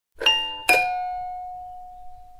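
Two-note doorbell-style chime, a ding-dong: a higher note about a quarter second in, then a lower note about half a second later that rings on and slowly fades.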